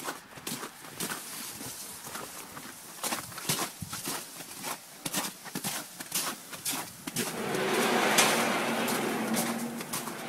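Irregular footsteps and knocks. About seven seconds in, the crane's electric drive motor starts and runs with a steady hum.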